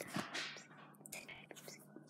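A quiet pause holding faint breathy, whisper-like sounds near the start and a few soft clicks.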